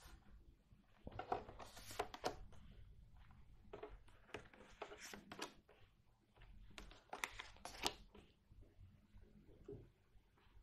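Oracle cards being dealt face down one at a time onto a wooden tabletop: faint soft slides and light taps of card on wood, in short clusters several times.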